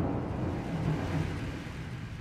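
Low rumbling tail of a TV channel ident's soundtrack, fading steadily away after a timpani-led musical sting.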